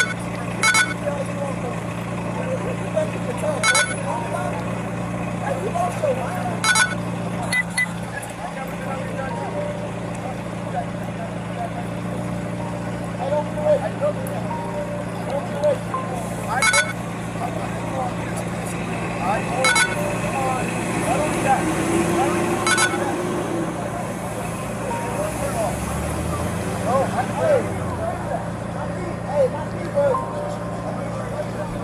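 Indistinct voices over a steady low hum, with a short sharp click every three seconds or so.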